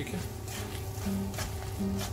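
Background music with held, stepwise-changing notes, over a few short scrapes of a slotted spatula stirring thick halwa in a nonstick pan.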